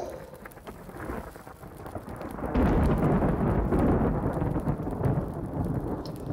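Thunder-like rumble that swells loudly about two and a half seconds in and holds.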